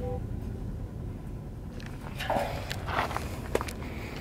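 Footsteps on stony ground, a few steps in the second half, over a low steady rumble.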